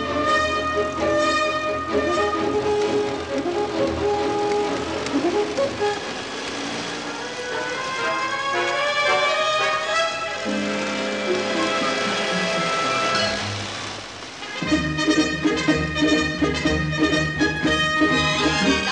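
Orchestral film score music: a busy melodic passage that thins out through the middle with rising runs, then swells back to full, loud playing near the end.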